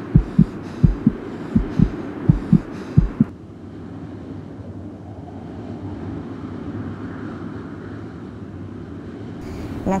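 A heartbeat sound effect: low double thumps, lub-dub about every 0.7 seconds, stopping about three seconds in. A quieter steady background noise follows.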